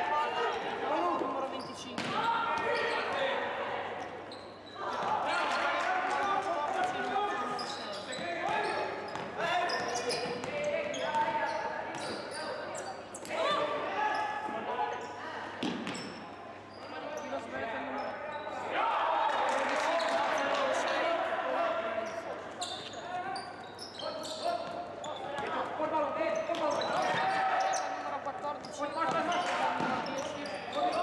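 Basketball being dribbled on a hardwood court, with voices calling out during play, echoing in a large sports hall.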